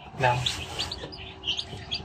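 Newly hatched chicks peeping: repeated short, high peeps.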